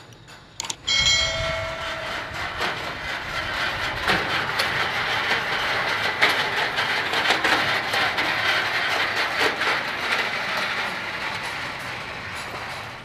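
Construction material hoist running on its lattice mast: a steady mechanical rattle full of small clanks that starts about a second in with a brief whine and grows a little quieter near the end.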